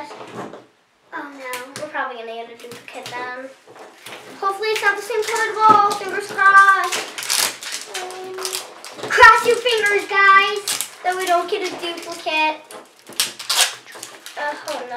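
Young girls' voices talking, the words not made out, over intermittent crackling and tearing of the plastic seals and wrapping being peeled off LOL Surprise balls.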